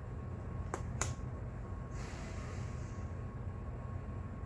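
Tarot cards handled on a tabletop: two light taps about a second in, then a soft brushing slide of a card, over a steady low hum.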